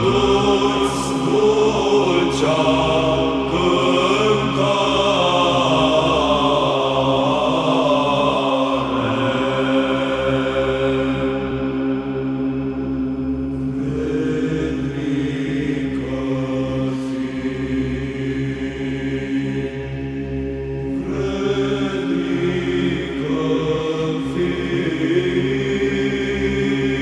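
Orthodox Byzantine (psaltic) chant in the fifth tone, sung in Romanian: a melodic line of voices moving over a steady held drone (the ison).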